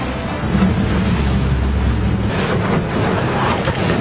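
Wind buffeting the microphone over choppy sea water, a steady rough rushing noise with a heavy low rumble.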